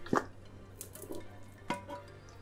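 A non-stick frying pan and a large ceramic plate being turned over together to flip a potato omelette: a light knock just as it starts, faint handling sounds, and another knock near the end.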